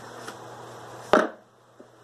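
Cardboard Motorola smartphone box being opened: a single short, sharp sound about a second in as the lid comes off, over a low steady hiss, with a faint tick near the end.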